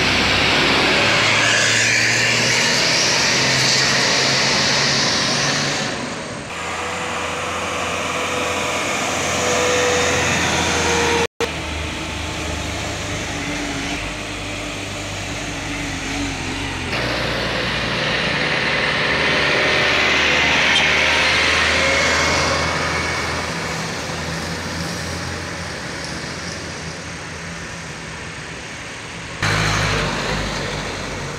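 A bus and heavily loaded trucks passing close by at speed, one after another: engines running hard with tyre and road noise, the sound changing abruptly several times.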